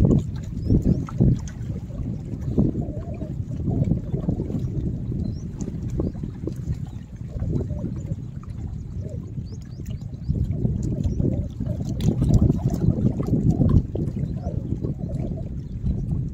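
Lake water lapping and sloshing against shoreline rocks, mixed with wind rumbling on the microphone; an uneven, mostly low-pitched wash of sound with no voices.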